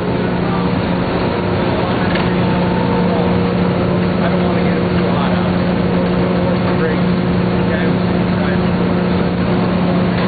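Loud, steady machinery noise in a coal-fired steam plant: a constant low hum over a dense, even roar that does not change.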